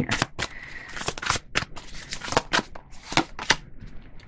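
A tarot deck being shuffled in the hands: a rapid, irregular run of light card clicks and slaps.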